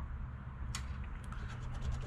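A coin scratching the coating off a scratch-off lottery ticket: one short stroke under a second in, then a run of quick strokes in the second half.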